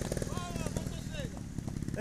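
Trials motorcycle engine running with a steady, fast pulsing beat, with faint voices over it.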